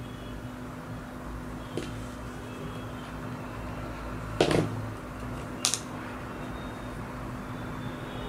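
A steady background hum with a few small sounds of craft materials being handled on a table: a faint tap, then a sharper knock about halfway through and a short click a second later, as a small cardboard piece is glued with a squeeze bottle of white glue.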